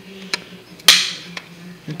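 A plastic DVD keep case and disc being handled: a light click, then a loud, sharp snap about a second in that rings off briefly.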